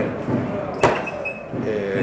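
A pause with room noise, broken by one sharp knock a little under a second in, then a man's voice starts again near the end.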